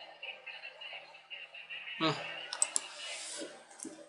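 A few sharp computer-mouse clicks in the second half, as a video player is scrubbed back to replay a passage, with faint voice sounds under them.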